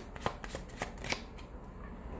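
A deck of tarot cards being shuffled by hand: a quick run of soft card flicks through the first second or so, then quieter.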